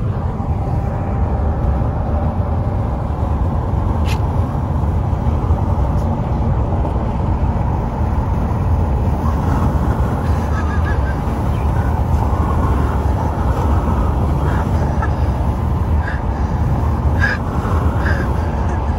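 Wind rushing in through an open car window at highway speed, buffeting the microphone over the tyre and road noise. A few faint, short high tones come through in the second half.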